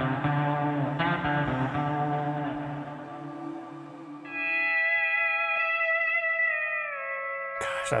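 Music: a steel guitar playing sustained, wavering chords with echo; about halfway in, a new, higher chord begins and its notes slide down together.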